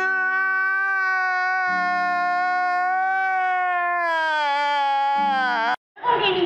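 A man's long, high-pitched crying wail, used as a meme sound effect. The wail is held for over five seconds, sinks in pitch near the end and cuts off suddenly.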